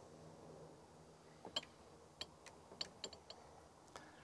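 Faint clicks and taps, about eight of them scattered over two seconds starting about a second and a half in, as a hand-held citrus sizing caliper is handled and set around a satsuma.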